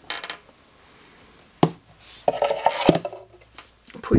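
Plastic toy being handled as a figure is set inside a toy TARDIS: a short rustle, then two sharp plastic clicks about a second and a half in and near three seconds, with rubbing and knocking between them.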